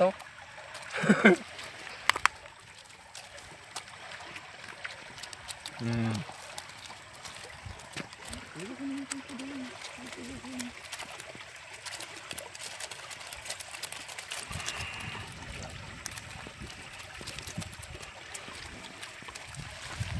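Water trickling and dripping from a wet mesh harvest net full of live whiteleg shrimp, with many small crackles and splashes as the shrimp flick in the net.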